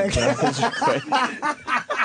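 Men laughing and chuckling in short, broken bursts.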